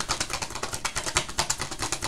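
A tarot deck being shuffled by hand: a fast, uneven run of clicks as the cards slap against each other.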